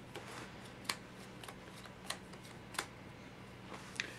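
Sleeved trading cards handled on a table: a few light clicks and snaps of the plastic card sleeves, three sharper ones roughly a second apart.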